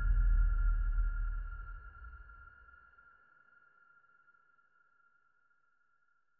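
Trailer sound design: the tail of a deep bass boom dying away over about three seconds, under a steady, high, sonar-like synthesizer tone that slowly fades to near silence.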